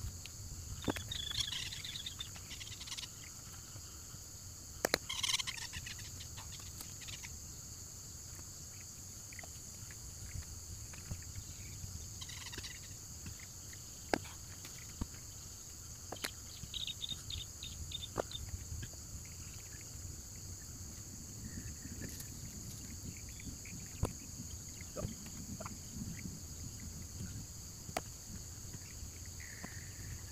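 Steady chorus of insects in a tropical clearing, with short bird chirps now and then. Scattered sharp clicks and light knocks come from hand digging in the soil close by.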